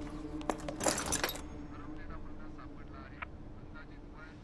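A short jangling clatter about a second in, followed by faint voices in the background.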